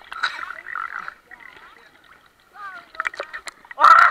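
Indistinct voices of people on river tubes talking and calling out, the loudest call near the end. Water laps and clicks against the camera sitting at the surface.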